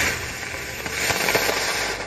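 Small ground firework hissing steadily as it burns; the hiss stops near the end.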